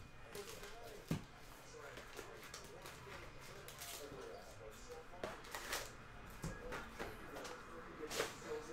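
Foil trading-card packs (2021 Panini Illusions football) being lifted out of a box and stacked, with soft wrapper crinkling and handling noise. There is a sharp tap about a second in, louder crinkles around five to six seconds, and a low knock soon after as packs are set down.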